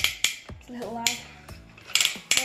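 Plastic joints of a Transformers Rescue Bots Blades toy robot's arm clicking in quick runs as the arm is moved, once at the start and again at the end. A short voiced sound comes about a second in.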